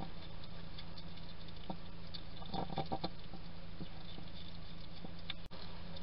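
European hedgehog chewing and crunching food from a dish, a run of small quick clicks and crunches that are busiest about two and a half to three seconds in, over a steady low hum. The sound drops out for an instant near the end.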